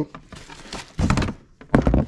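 Cardboard boxes and parts packaging being handled: faint rustling, a short scrape about a second in, and a couple of sharp thunks near the end as a part is pulled out of a box.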